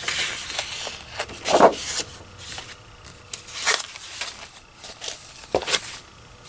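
Sheets of patterned craft paper rustling and sliding as they are handled, in several short bursts, the loudest about one and a half seconds in.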